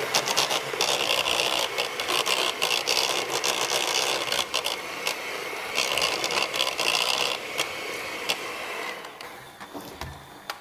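Electric hand mixer running with its beaters in a stainless steel bowl, beating quark (Topfen) dough with an egg, with scattered clicks of the beaters against the metal. The mixer stops about nine seconds in.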